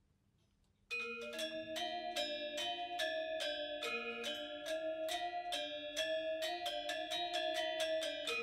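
Balinese gamelan ensemble of bronze-keyed gangsa metallophones bursting in together about a second in after near silence, then a fast, interlocking run of ringing mallet strokes at several pitches.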